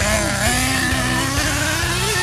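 Small nitro engine of an RC monster truck running at high revs, its pitch slowly rising as the truck accelerates away.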